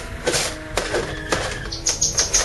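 Grated glycerin soap being tipped from a plastic container into a small stainless-steel pot: a run of irregular crisp scrapes and taps, over soft background music.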